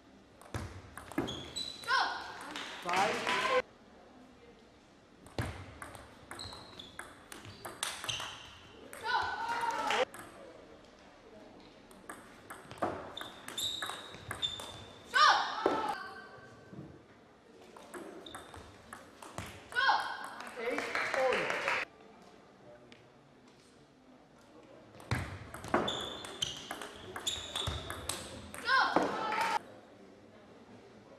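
Table tennis rallies: the celluloid ball clicking off bats and table in five separate bursts, with voices calling out around the points and quieter pauses between them, echoing in a large hall.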